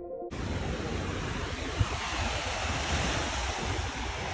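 Sea waves breaking and washing up a sandy beach, with wind rumbling on the microphone. The sound cuts in suddenly just after the start, replacing music.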